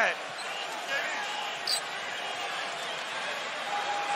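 Basketball arena ambience during an NBA game: an even crowd murmur with faint distant shouts and a brief high squeak about halfway through.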